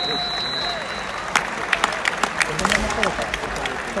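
Bamboo shinai clacking together in a quick, irregular flurry of sharp strikes from about a second in until near the end, over background voices.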